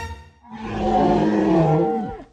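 A loud monster-style roar voicing a dragon hand puppet, about a second and a half long, falling in pitch as it dies away. Background music cuts out just before it.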